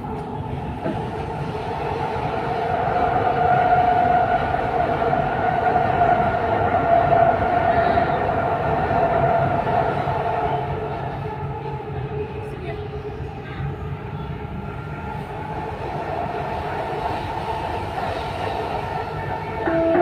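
Dubai Metro train running, heard from inside the carriage: a steady rumble with a whine that grows louder over the first few seconds and fades after about ten seconds.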